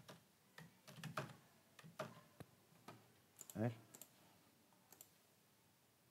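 Sparse, faint computer keyboard keystrokes and clicks, about a dozen single taps spread unevenly, thinning out near the end.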